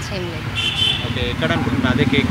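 Street traffic with a vehicle engine running steadily underneath, a brief high-pitched horn toot about half a second in, and voices in the background.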